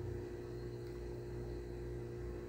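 Steady low hum of background room noise, with a few faint unchanging tones running through it.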